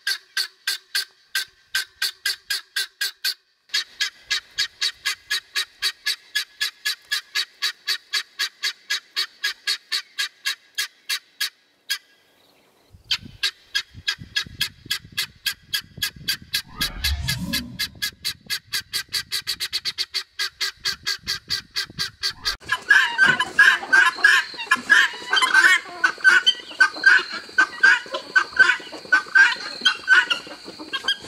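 Helmeted guinea fowl calling: long runs of short, sharp calls repeated evenly about four times a second, with a brief break about twelve seconds in and the calls quickening later. Near the end the calling turns louder and busier, with more than one call overlapping.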